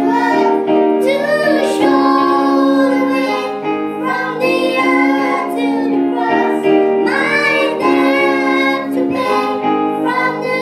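A girl singing into a microphone, with other children's voices, accompanied by an electronic keyboard playing held chords that change every second or two.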